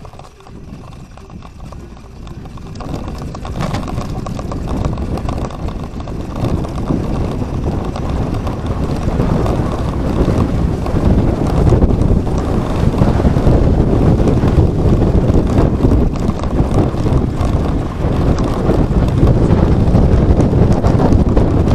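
Wind rumbling on the microphone of a camera mounted on a moving bike, mixed with tyre and road noise. It grows steadily louder over the first half as the bike picks up speed, then holds.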